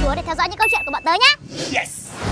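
Two short, bright dings, one of them about half a second in, from a subscribe-button animation sound effect, over quick gliding voices. A whoosh starts near the end.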